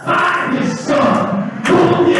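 Live church praise music: heavy drum thumps under voices and instruments, with a strong hit at the start and another near the end.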